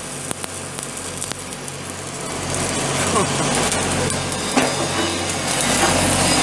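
Arc welding crackling and sizzling over a steady low engine hum, with indistinct voices in the background.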